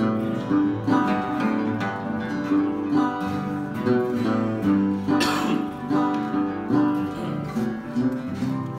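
Flattop acoustic guitar played oldtime style: bass notes alternating with strummed chords in a steady rhythm, with two-note bass runs walking down between the chords.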